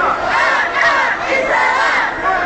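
A crowd of protesters shouting together, many raised voices overlapping loudly.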